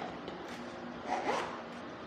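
A zipper on a cycling bag being pulled, with the loudest pull a little after a second in, over a steady low hum.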